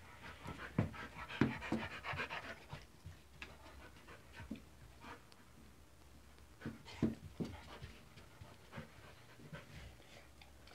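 A dog panting rapidly, heaviest in the first three seconds. A few short, louder knocks are heard about a second in and again around seven seconds.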